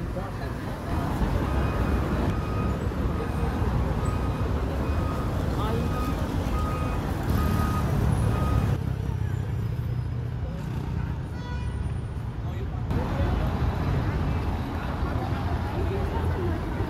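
City street traffic: a steady low rumble of passing cars and buses. A series of short, evenly spaced beeps at one pitch sounds over it in the first half.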